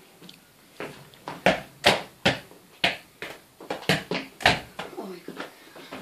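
A string of about a dozen sharp knocks and thumps, irregularly spaced, the loudest near two seconds in and again about four and a half seconds in: a mini football kicked at a plastic bottle, hitting furniture and the floor, mixed with footsteps.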